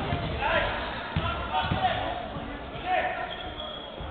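Basketball bouncing on a hardwood court, a few thumps in the first two seconds, with voices in the hall.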